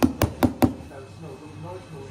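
Metal espresso portafilter knocked sharply against the counter four quick times, about four knocks a second, settling the ground coffee in the basket before tamping.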